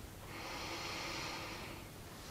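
A woman taking a slow, deep breath in: a soft airy hiss that lasts about a second and a half and fades out near the end.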